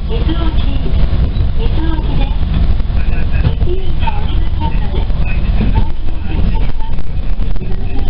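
Interior running noise of a Fukui Railway Fukubu Line train under way: a loud, steady low rumble of wheels on rail and running gear heard inside the passenger car.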